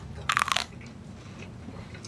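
A brief crunching crackle, about a third of a second in and lasting about a quarter of a second.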